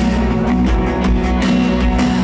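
Live rock band playing an instrumental passage led by electric guitar, with no singing.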